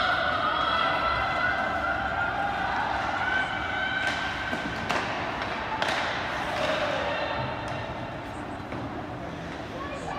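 Spectators' long drawn-out shouts and cheers in an ice rink, several voices held at once. Sharp knocks of pucks and sticks against the boards come about four to six seconds in.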